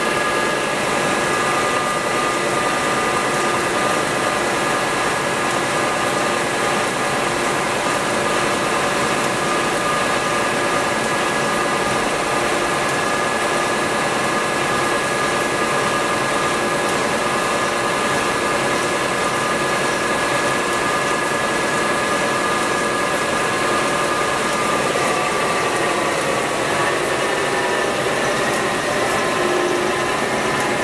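Timesaver 37-inch single-head wide belt sander running with nothing on its conveyor bed: a loud, steady machine drone with a high, even whine on top.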